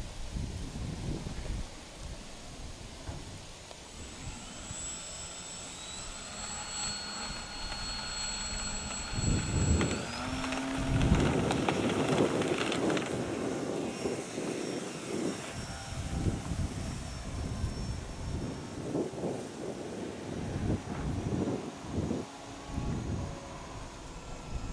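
The motor and propeller of a QRP Smile-400 radio-controlled seaplane whine high, the pitch climbing in steps about six and ten seconds in as it is throttled up for a takeoff run across the water. A loud rush of noise around the takeoff, from about ten to thirteen seconds, marks full throttle and spray off the floats before it climbs away.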